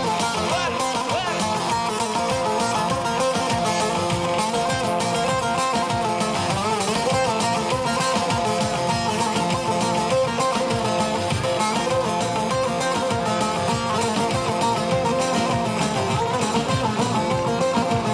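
Live band playing an instrumental passage of a Turkish folk dance tune, with a plucked-string melody over the accompaniment.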